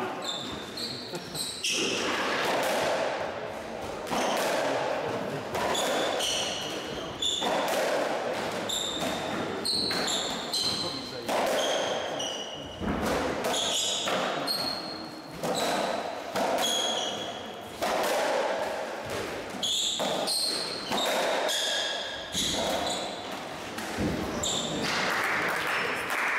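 A racketball rally in a squash court: the ball is struck by the racquets and hits the walls and floor, about once a second, with short high squeaks of players' shoes on the wooden floor between the shots. All of it echoes in the enclosed court.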